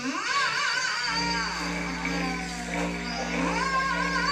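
Free-improvised music for clarinet, voice and cello: long pitched tones that slide up and waver, over a held low note.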